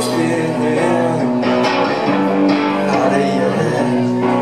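Live rock band playing: electric guitars over bass and drums, mostly instrumental with little or no singing.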